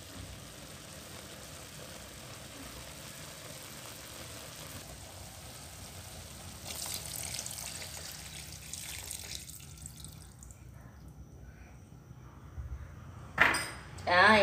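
Coconut water poured from a fresh green coconut into a wok of braising duck pieces, a louder splashing pour for a few seconds around the middle over a steady low sizzle. A single sharp knock near the end.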